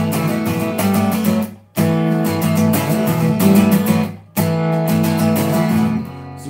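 Acoustic guitar with a capo being strummed in an instrumental passage, with no singing, recorded into a mobile phone. The strumming cuts off twice for a moment, just under two seconds in and again just past four seconds.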